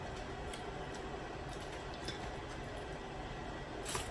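Faint scattered clicks and crackles of a boiled shrimp being peeled by hand, with a sharper click near the end, over a steady low room hiss.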